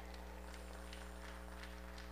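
Low-level steady electrical hum from a microphone and sound system: a buzz of several even, unchanging tones, with faint scattered ticks.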